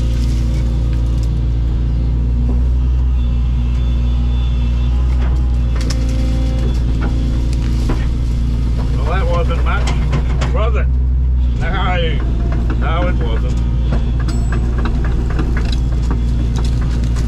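Excavator diesel engine and hydraulics running steadily under working load, heard from inside the cab. The engine's low drone drops about eleven and a half seconds in.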